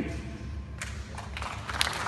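Audience clapping starts about a second in and builds into applause, over a low steady hum.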